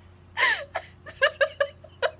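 Helpless, hard laughter: a high gasping cry that slides down in pitch about half a second in, then a quick run of short, high-pitched laughs.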